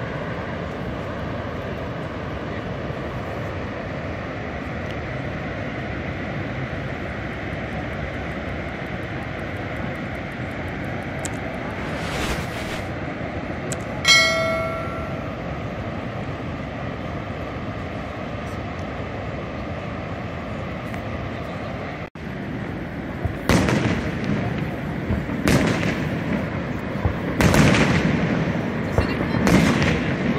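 Steady rushing of Niagara Falls' water, with a short high tone about halfway through. After a brief break in the sound, fireworks go off in a string of loud bangs every second or two over the rushing.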